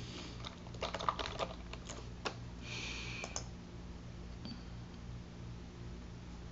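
Typing on a computer keyboard: a quick run of key clicks over about two seconds, then a couple more clicks and a short hiss, over a faint low hum.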